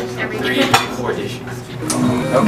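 Restaurant plates and cutlery clinking and clattering, with a sharp clink partway through and another near the end.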